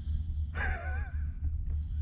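A man's voice: one drawn-out, wavering syllable ("I…") over a steady low rumble.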